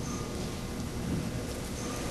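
Steady room tone in a meeting hall: an even hiss over a low rumble, with no distinct event.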